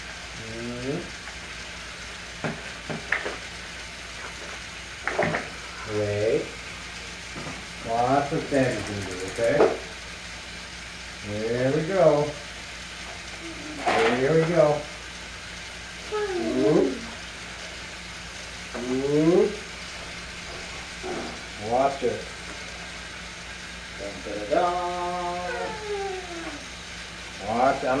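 Steady whirring hiss of battery-powered Trackmaster toy trains running on plastic track, under short wordless voice sounds every second or two that rise and fall in pitch, with one longer held note that falls away near the end.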